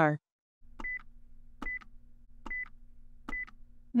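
Quiz countdown sound effect: four short ticks, each with a brief high beep, a little under a second apart, over a low steady drone, marking the thinking time before the answer.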